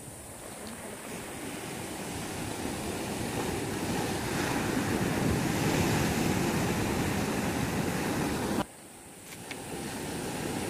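Sea surf breaking and washing up the shore, a steady rush that swells louder through the middle. It drops away abruptly a little before the end, then builds again.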